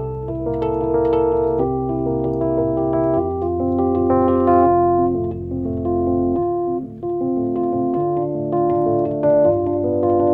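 Electric piano playing sustained chords over a low bass line, with no singing; the bass note shifts about a third of the way in, again past the middle and once more near the end.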